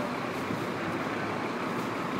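Fire engines running, a steady noise without a clear pitch.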